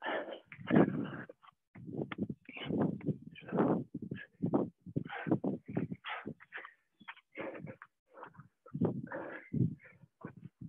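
Heavy, effortful breathing in short, irregular gasps and exhalations from people exercising hard through jumping lunges, push-ups and sit-ups. The audio is choppy, cutting to silence between breaths as video-call audio does.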